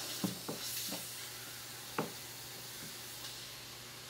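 Faint, steady hiss and sizzle of steam forced through a needle into an acoustic guitar's neck joint, escaping around the needle to soften the glue for a neck reset. A few small clicks come in the first second, and a sharper click about two seconds in.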